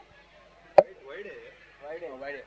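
A single sharp crack about a second in, much the loudest sound, followed by men's voices talking in the background.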